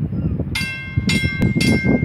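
Warning bell of the Sturgeon Bay drawbridge starting to ring about half a second in, striking about twice a second, signalling that traffic is stopped and the bridge is about to open. Wind rumbles on the microphone underneath.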